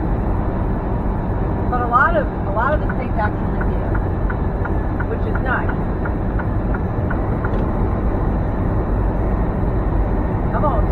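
Steady drone of a semi truck's engine and tyres heard inside the cab at highway speed. A few short gliding chirps come about two seconds in and again near the middle, over faint ticks about twice a second.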